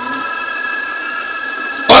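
A steady high ringing made of several held tones at once, which stops as speech resumes near the end.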